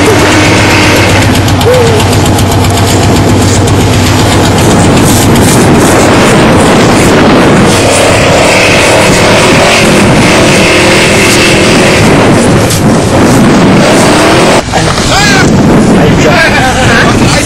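Pickup truck engine running hard as the truck, stuck in deep wet snow, spins its light rear wheels trying to drive out. The sound is loud and steady.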